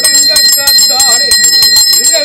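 Brass hand-held puja bell rung rapidly and continuously, several strokes a second, its high tone ringing on steadily, with voices beneath.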